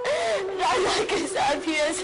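A woman sobbing and wailing, with broken, gasping breaths, over a held note of background music.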